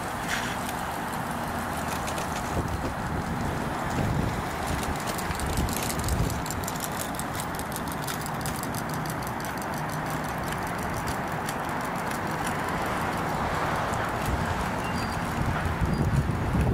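City bus engine running as the bus drives slowly through the interchange, a low steady hum under general road noise.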